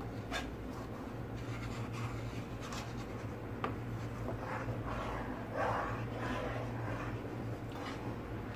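Wooden spoon stirring thickening milk in a pan, scraping over the pan's base with scattered light knocks against its side, the loudest scrape about five and a half seconds in. A steady low hum runs underneath.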